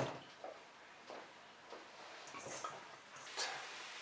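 Faint, soft squishing of butter-and-flour dough being kneaded by hand in a stainless steel bowl, with a few light taps.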